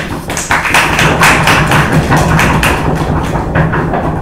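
A small audience applauding: many hands clapping in a dense, irregular patter.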